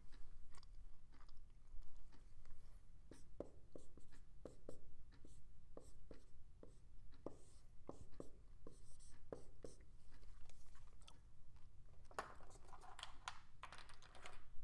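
Dry-erase marker writing on a whiteboard: a string of short strokes and taps of the marker tip on the board. A louder, denser scraping rustle comes near the end.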